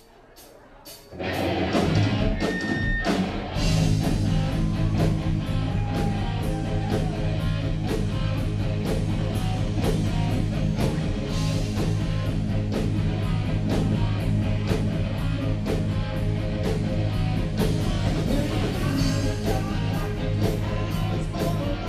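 A live rock band with electric guitar begins a song: a brief hush, then the full band comes in about a second in and plays on at a steady beat.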